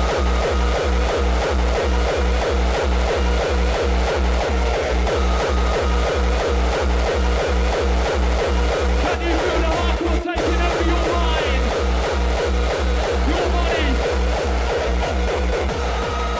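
Hardcore techno DJ set: a fast, heavy kick drum at about three beats a second under repeating synth stabs, with a momentary break in the music about ten seconds in.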